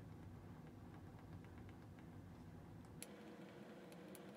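Near silence: faint room tone with a low hum, and one faint click about three seconds in.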